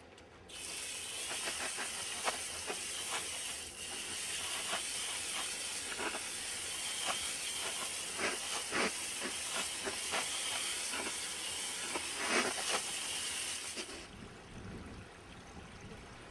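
Garden hose spray nozzle jetting water onto lava rock in a plastic crate, rinsing the new filter media: a steady hiss with spatters of water on the rock. It starts about half a second in and stops about two seconds before the end.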